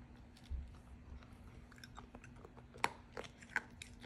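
A small child chewing and crunching food close to the microphone: faint, scattered mouth clicks and crunches, with a few sharper clicks near the end, over a faint steady hum.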